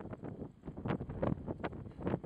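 Wind buffeting the camera microphone in irregular gusts.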